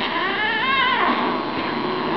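Bengal kitten vocalising during play: one wavering, high-pitched cry about a second long, trailing into a lower, quieter drawn-out sound.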